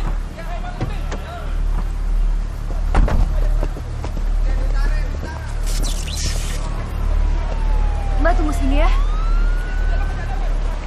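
Emergency vehicle siren wailing near the end, its pitch sliding slowly down and then sweeping back up, over a steady low rumble and scattered crowd voices. There is a sharp thump about three seconds in.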